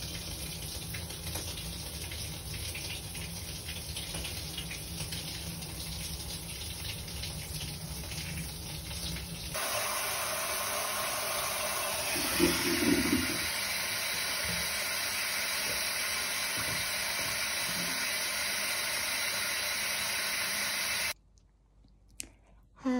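Water running in a bathtub, a steady rush; about ten seconds in it turns brighter and louder, and it stops abruptly about a second before the end. A brief louder sound stands out just after twelve seconds.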